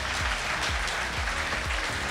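Audience applauding, over background music with a steady low beat.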